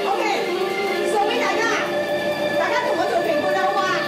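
A woman talking animatedly into a handheld microphone over a PA system, with background music playing steadily underneath.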